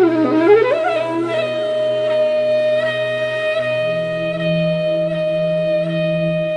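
Background music: a woodwind-like melody that bends in pitch for about a second, then holds one long note over a low steady drone.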